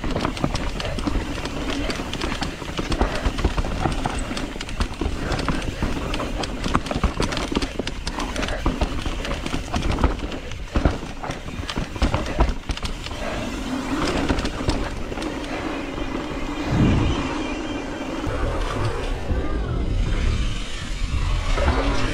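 Mountain bike descending a rough dirt trail, heard from a handlebar-mounted camera: tyres rolling over dirt and rocks with a constant clatter of knocks and rattles from the bike over the bumps.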